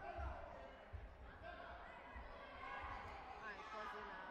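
Dull thumps from a taekwondo bout's footwork and kicks on the foam mat, the strongest two in the first second, under indistinct voices in a sports hall.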